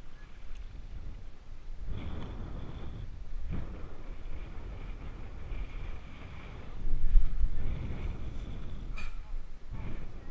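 Wind rumbling on the microphone, with water sloshing as someone wades through shallow water; it swells louder for about half a second around seven seconds in.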